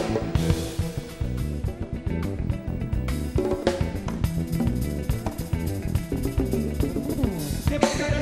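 A live jazz-fusion band playing, with the drum kit and percussion to the fore over a steady bass line.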